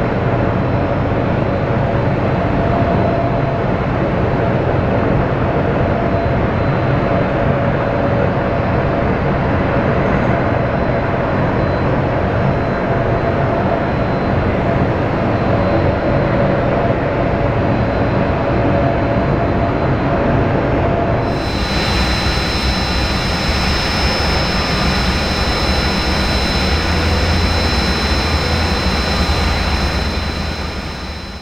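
C-130 Hercules's four Allison T56 turboprop engines running steadily on the ground, propellers turning. About two-thirds of the way in the sound changes abruptly to a different steady engine drone with a high, steady whine.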